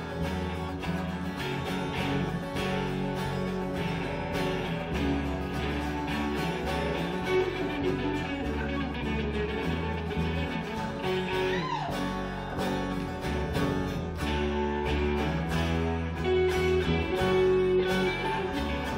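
Live pirate-folk band playing an instrumental break: strummed acoustic guitar with electric guitar, bass guitar and drums, and one short falling glide in pitch about two-thirds of the way through.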